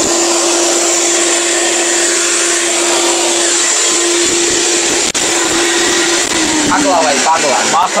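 ORPAT blender (mixer grinder) motor running at a steady, high pitch, then switched off and winding down with a falling pitch about six and a half seconds in. A man's voice starts near the end.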